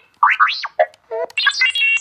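R2-D2-style droid beeps and whistles played through a loudspeaker by a Padawan 360 control board, set off by pressing buttons on an Xbox 360 controller: a quick string of rising and falling chirps and warbles.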